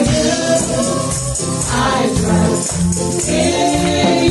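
Praise and worship song: voices singing over a full band with drums and bass, with tambourines jingling along.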